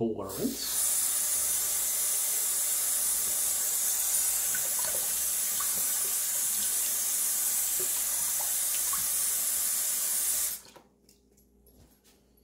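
Bathroom sink tap running cold water, with faint splashing as the face is rinsed under it. The flow cuts off suddenly about ten and a half seconds in.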